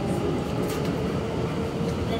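Tokyo Metro 2000-series subway train running through a tunnel, heard from inside the car: a steady rumble of wheels and running gear with a steady whine from the drive.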